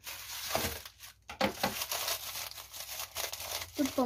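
Blue plastic poly mailer bag crinkling as it is picked up and handled, in irregular bursts with a short pause about a second in.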